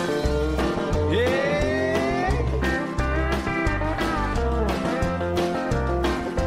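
Instrumental passage of a country song with a steady bass-and-drum beat under sustained notes. About a second in, one note slides upward for a second or so.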